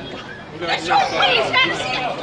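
Several people's voices talking over one another in a street scuffle.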